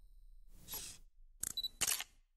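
Camera-shutter sound effects for a logo reveal: a short rush of noise about half a second in, then two sharp shutter clicks near the end.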